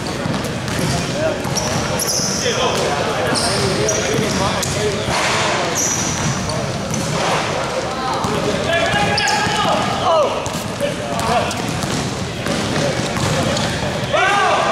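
Live basketball play in a large hall: a basketball bouncing on the court floor, sneakers squeaking in short high bursts, and players calling out.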